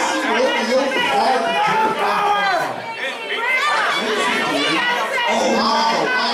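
Crowd of spectators talking and shouting at once, many voices overlapping.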